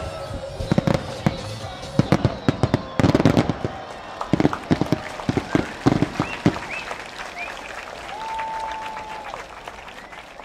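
Aerial fireworks display: a rapid, irregular run of shell bursts, bangs and crackling that thins out after about six and a half seconds.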